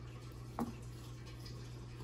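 Quiet, steady low room hum with one faint click about half a second in.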